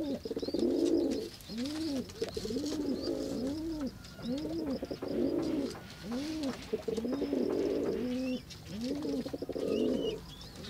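A dove cooing on and on: a steady series of low, rising-and-falling coos, about one a second, run together with a rapid rolling purr. Faint high chirps of small birds sound in the background.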